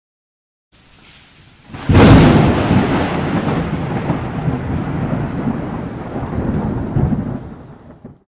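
Thunder-and-rain sound effect. A faint rain hiss starts just under a second in, then a sharp thunderclap about two seconds in rolls into a long rumble that fades and stops abruptly.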